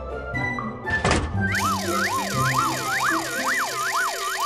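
Cartoon sound effects over light background music: a short whoosh about a second in, then a wobbling tone swooping up and down about four times a second over a hiss. This is a spinning swirl transition effect.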